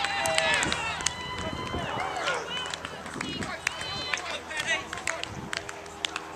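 Players' shouts and calls carrying across an outdoor sports pitch during play, with a few sharp clicks among them.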